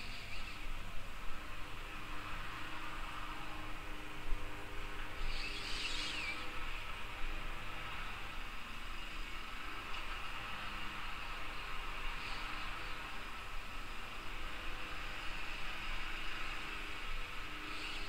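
Soft, scratchy rustling of a paintbrush dabbing acrylic paint onto paper, over a steady hiss; the loudest stroke comes about five to six seconds in.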